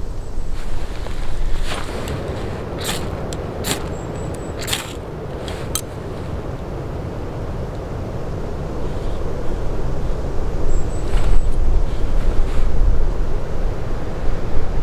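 Wind rumbling on the microphone, growing stronger in the second half. In the first half there are about six short, sharp strikes while a wax-soaked fire starter is being lit.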